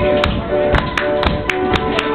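Tap dancing: sharp tap-shoe strikes in a steady rhythm of about four a second, over live flute and piano playing.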